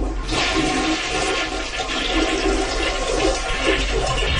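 Toilet flushing: a long, steady rush of water with gurgling, played as a radio sound effect to dump a caller off the air.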